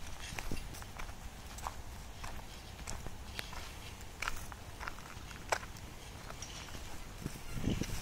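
Footsteps of a person walking on a paved path, with short bird chirps now and then over a faint outdoor rumble.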